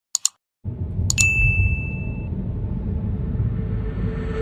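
Subscribe-button animation sound effect: two quick mouse clicks, then about a second in a bright bell ding that rings on for about a second, over a low steady rumble.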